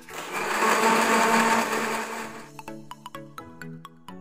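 Electric countertop blender running on a fruit-and-yogurt smoothie, a loud steady whir that starts at once and cuts off about two and a half seconds in. Light background music with plucked notes plays under it and carries on after.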